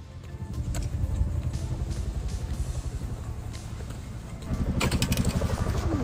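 Low, fluttering rumble on the recording's microphone, the sort that road or wind noise makes, louder from about four and a half seconds in.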